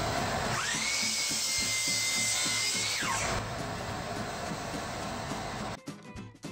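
Sliding miter saw running and cutting through a turned oak-and-maple vase. A high whine climbs to a steady pitch about half a second in and drops away about three seconds in, and the saw stops just before the end.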